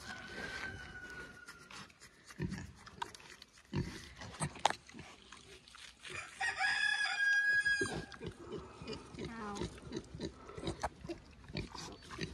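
Pigs grunting and chewing as they take treats from a hand, with scattered short grunts and clicks. About six seconds in comes one loud, high, drawn-out call lasting about a second and a half.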